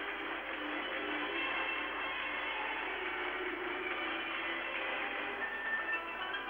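Music for an ice dance free programme, continuous and steady, with the narrow, dull sound of an old television recording.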